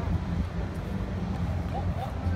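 Steady low outdoor rumble with no distinct events, the kind picked up by a phone microphone while walking in the open.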